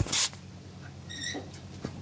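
A short rush of noise at the start, then a brief high-pitched chirp about a second in, over a faint steady low hum.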